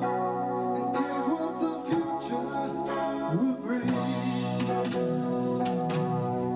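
A live rock band playing a song: electric guitar, bass, keyboards and drums, with the chords changing twice and cymbal hits throughout.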